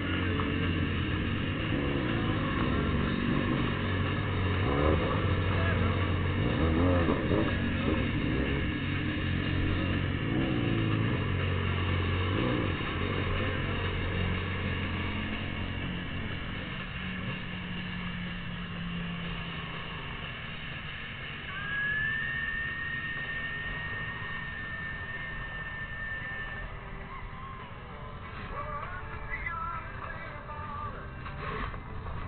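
Motorcycle engine idling steadily among a group of parked motorcycles, its low hum fading after about thirteen seconds, with voices mixed in. A thin, steady high tone sounds for several seconds in the second half.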